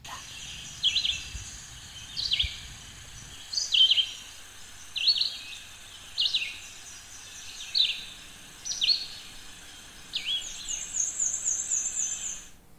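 A songbird calling outdoors: a short, downward-sweeping call repeated about every second and a half, then a quick run of higher, thinner notes near the end.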